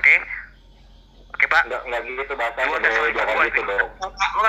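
Speech only, heard through a video-call recording: a short utterance at the start, a pause of about a second, then continuous talking from about a second and a half in.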